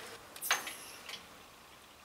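A sharp light click about half a second in, with a brief high ring, then a fainter tick: the piston and connecting rod being handled in the shop press.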